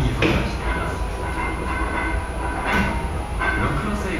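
Steady low background rumble with faint distant voices talking, and a few brief soft knocks.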